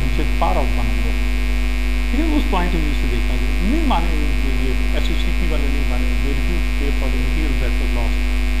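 Loud, steady electrical mains hum in the recording, deep with a second steady tone above it, running unchanged. Fainter bits of speech come and go over it.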